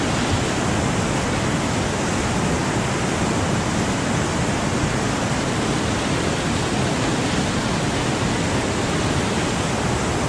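Whitewater rapids rushing loudly and steadily, heard at water level from a kayak in the middle of the rapid.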